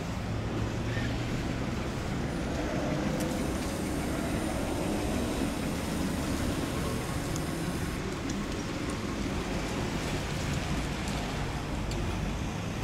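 BMW i3 electric car moving off slowly across wet asphalt with almost no motor sound: a steady hiss of tyres on the wet surface, blended with traffic noise around it.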